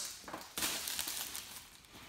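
Thin plastic shrink wrap crinkling and crackling as it is pulled off a cardboard graphics-card box, starting about half a second in.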